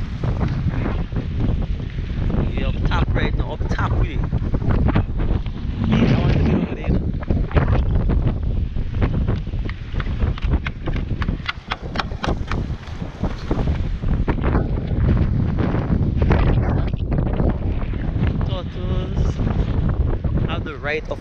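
Strong wind buffeting the microphone, loud and continuous, with many short knocks of footsteps on wooden bridge planks and steps.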